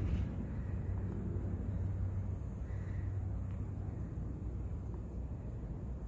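A steady low rumble of outdoor background noise, with no distinct events standing out.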